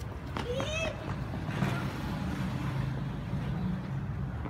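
A motor vehicle going by on the street, its low engine hum building about a second and a half in and running on steadily. A child's short high-pitched call comes near the start.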